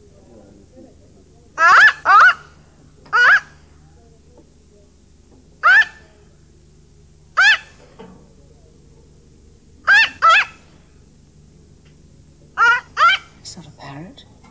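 Caged myna bird calling: about nine short, loud whistled calls with a bending pitch, several coming in quick pairs, spaced a second or two apart.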